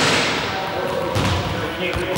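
Balls bouncing on a sports hall floor: a sharp noisy burst at the start, then a run of low dull thuds from about a second in, with distant voices echoing around the hall.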